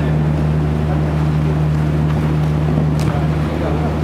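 A steady low hum fills the hall, with faint distant voices near the end and a sharp tap about three seconds in.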